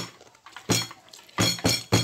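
A metal spoon clinking against a ceramic plate during a meal: about five short, ringing strikes, the last three close together near the end.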